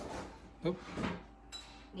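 A woman's brief "oh", with faint knocks of kitchen items being handled on the counter.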